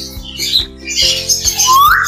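Caged birds chirping and squawking over background music that holds steady notes, with one clear whistle rising in pitch near the end.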